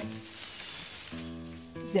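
Rustling in the undergrowth from a tortoise moving through the plants, a short hiss lasting about a second, with gentle background music resuming after it.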